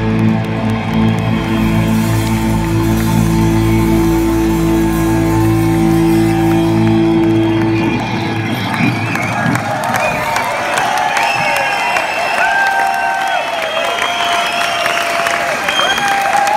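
A live rock band lets a final sustained chord ring for about eight seconds. It cuts off, and the audience cheers and applauds.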